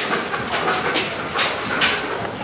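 Police sniffer dog breathing hard as it searches, short noisy hissing breaths about two a second.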